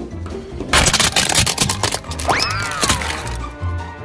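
Hard plastic toy truck cracking and snapping apart as a car tyre rolls over it: a fast run of loud cracks starting about a second in and lasting around two seconds, over background music.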